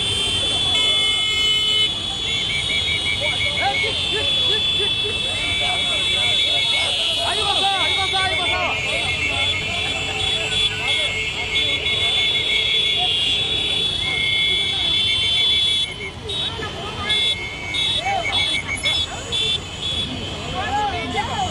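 Horns of a motorcycle convoy sounding together: several steady high blaring tones with a rapid beeping horn among them, over the rumble of the motorcycles and people's shouting voices. The blaring turns choppy and somewhat quieter near the end.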